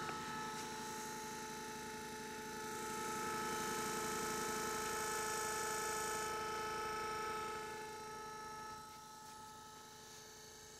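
Two Razor scooter electric motors coupled shaft to shaft, the drive motor spinning the second as a generator, running at a constant speed with a steady electric whine and hum. It is louder in the middle and eases a little near the end.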